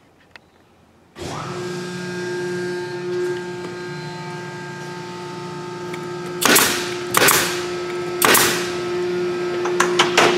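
An air compressor's motor starts about a second in and runs steadily with a hum. In the second half, a pneumatic brad nailer fires four times as it nails a layered MDF piece onto the top of an MDF mold box.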